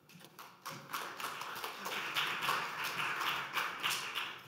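Audience applauding, starting about half a second in and holding steady.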